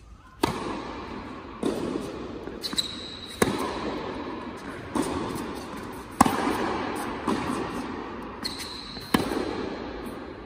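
Tennis ball being struck by rackets and bouncing on an indoor hard court during a serve and rally: a sharp crack every second or so, each ringing on in the hall's echo. Two brief high-pitched squeaks come a little before the middle and near the end.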